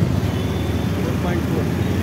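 Motorcycle running steadily while being ridden through traffic, heard from the pillion seat, with a steady low rumble of engine and road noise.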